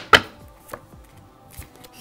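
Tarot cards being handled and laid on a wooden table: a sharp snap of the cards just after the start, then a few light taps.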